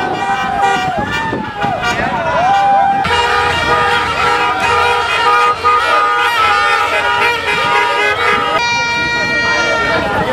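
Car horns honking, several held at once, over people shouting and cheering; a louder horn blares near the end.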